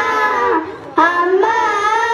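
Children singing into microphones, holding long sustained notes, with a short break a little after half a second before the next phrase begins.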